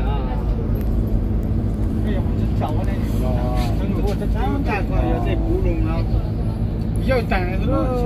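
Steady low drone of a moving minibus's engine and tyres heard from inside the cabin, with passengers' voices talking over it.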